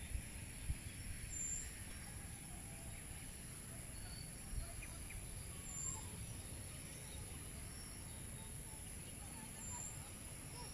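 Outdoor field ambience: an irregular low rumble of wind on the microphone under a steady high-pitched hiss, with a short high chirp three times, about four seconds apart.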